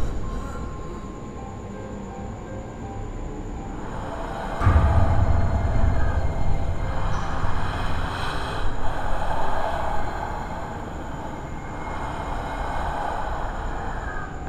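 Horror-film sound design: a low rumbling drone that swells suddenly into a loud rumble about four and a half seconds in, with a harsh, screeching layer on top, easing back to a quieter drone after about ten seconds.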